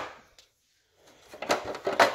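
Plastic headlight housing parts being handled and pried apart by a gloved hand: a sharp knock at the start that fades, a short silence, then irregular plastic clicks and rattles from about a second and a half in.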